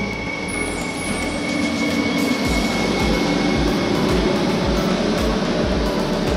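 A Régio 2N double-deck electric train passing close along the platform. A rising rush of wheels and running gear carries a thin high whine that fades out about halfway through, and repeated low thumps follow as the carriages go by.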